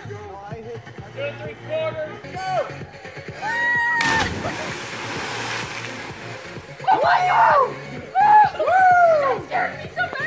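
Two people jumping together into a creek pool: a single large splash of bodies hitting the water about four seconds in, washing out over about two seconds. Loud rising-and-falling pitched sounds come just before it and, loudest of all, after it.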